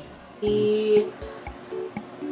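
Short, quiet stretch of background music with plucked-string notes.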